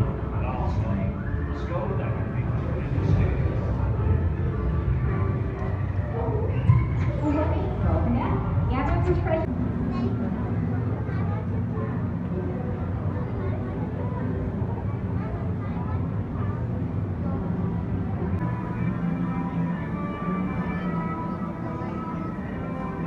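Indistinct voices and music over a constant low hum, with a few sharp clicks in the first half. After about ten seconds the voices thin out and steadier held music tones carry on.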